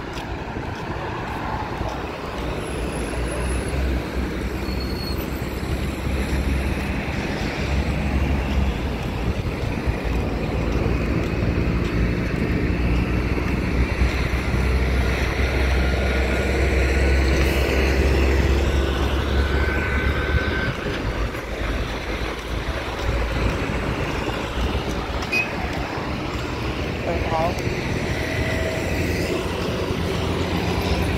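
Road traffic going by: cars and a truck passing on the asphalt, with a steady low engine and tyre rumble that grows louder from about eight to twenty seconds in.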